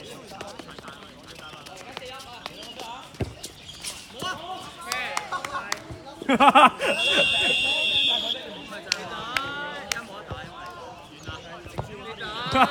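Dodgeball play: players' voices and shouts with sharp hits of the ball throughout, and a sustained high-pitched whistle blast of about a second and a half nearly seven seconds in.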